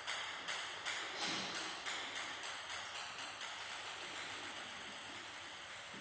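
A table-tennis ball bouncing on a hard surface, each bounce a sharp click. The bounces come quicker and quieter as the ball settles, from about two a second to a faint rapid patter near the end.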